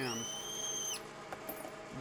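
Outside chamfer tool turning in a metal lathe, cutting the mouth of a hand-held .308 Winchester brass case: a steady high-pitched squeal for about a second that stops suddenly as the case comes off the cutter.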